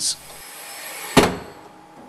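Automated handling gripper of a test bench moving, with a steady hiss and one sharp metallic clack a little over a second in that rings briefly.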